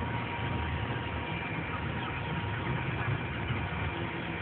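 Truck engine running steadily, a low even rumble heard from inside the cab.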